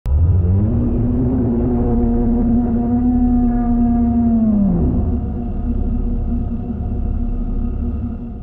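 Dark ambient intro sound design: a deep rumbling drone under a held pitched tone, which slides down in pitch about five seconds in. The drone carries on after that and begins to fade near the end.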